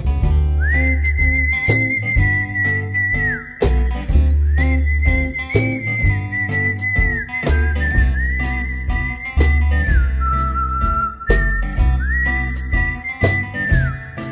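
Instrumental break in an acoustic pop song: a whistled melody of long held notes in about five phrases, each sliding up into pitch and dropping away at its end, one phrase sitting lower near the middle. Underneath run a bass line and a steady beat.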